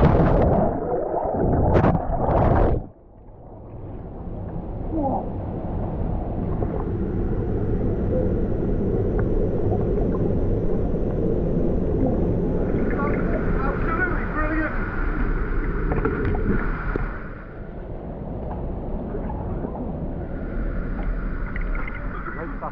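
Splashing into a river pool, then turbulent white water churning right against a body-worn action camera, a heavy muffled rush that eases somewhat near the end.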